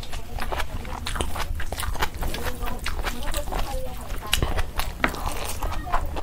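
Close-miked eating sounds of a man eating curry and rice by hand: wet chewing and irregular lip-smacking clicks, with the soft squelch of fingers working the food.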